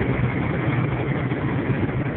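Steady engine and road noise inside a vehicle's cab while driving along a highway, with a low, even hum.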